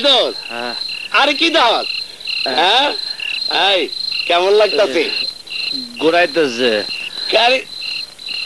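Crickets chirping in a steady, regular rhythm under a louder pitched call, repeated many times, that slides up and down in pitch.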